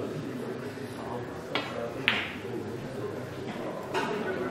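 A snooker shot: two sharp clicks of cue and balls, about half a second apart, the second the louder.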